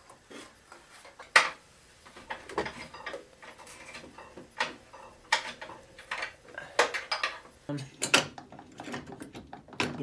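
Aluminium table-saw extension-wing rails and metal brackets clinking and knocking as they are slid into place and fitted. It is a scattered series of separate sharp metallic clicks, the loudest about a second and a half in.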